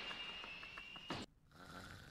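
An anime character snoring faintly in his sleep, from the episode's soundtrack. A thin high ringing tone fades out over the first second, and a soft low snore comes near the end.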